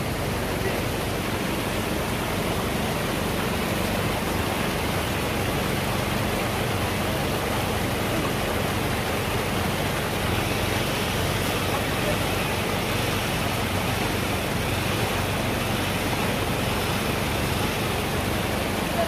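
Rushing water of a small cascade in a rocky mountain stream, a steady, unbroken hiss.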